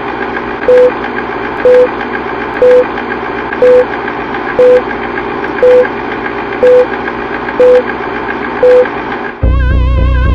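Film-leader countdown sound effect: a short beep once a second, nine beeps, over a steady whirring noise. About nine seconds in, the beeps stop and a loud low drone begins.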